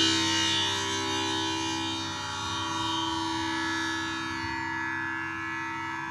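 Tanpura drone: its plucked strings ring together in a steady sustained chord with many overtones, growing quieter over the first couple of seconds and then holding.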